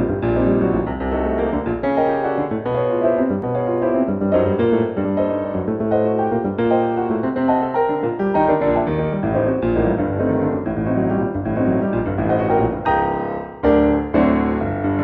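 Background piano music: a steady run of notes and chords, with a short dip and a fresh chord struck just before the end.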